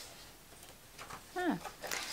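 Paper pages of a softcover workbook being turned, faintly. About a second and a half in comes a brief voice-like sound that falls and then rises in pitch.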